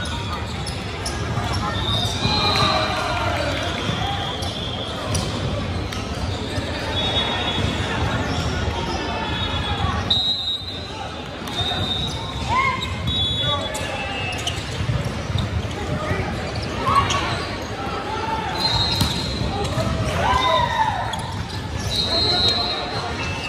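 Indoor volleyball game on a hardwood court: sneakers squeaking, the ball being struck and players calling out, echoing in a large gym. There is a brief lull about ten seconds in.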